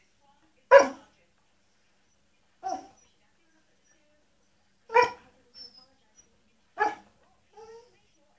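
Pembroke Welsh corgi barking for attention: four single barks about two seconds apart, the second one softer. Fainter short sounds follow the third and fourth barks.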